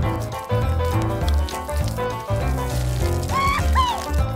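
Background music with a steady beat and repeating bass line, with two short swooping tones near the end.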